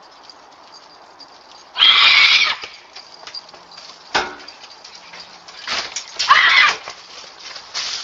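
A woman screaming in loud, drawn-out cries as she flees from dogs, heard through a security camera's tinny microphone. A single sharp knock comes about four seconds in.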